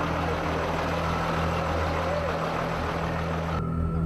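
Truck engine running with road noise, steady, over a low held drone; the engine noise drops away shortly before the end.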